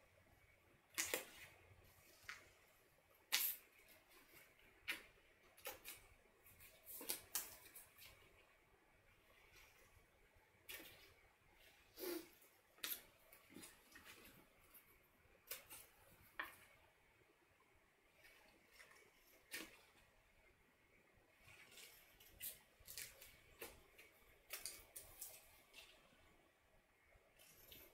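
Small scissors snipping slits into a folded paper strip: a string of faint, sharp snips at irregular intervals, with pauses between bursts.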